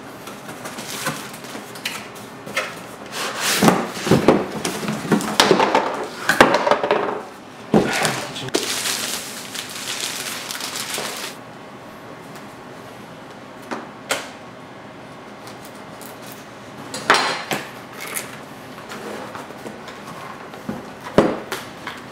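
Hands opening a cardboard shipping box and pulling out a boxed laptop: rustling, scraping and knocks of cardboard and packing, with a longer sliding scrape about nine seconds in. After that it goes quieter, with a few single knocks as the box is handled on a wooden table.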